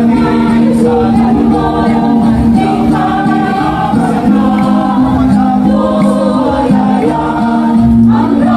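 Mixed choir of men and women singing in harmony, holding long notes.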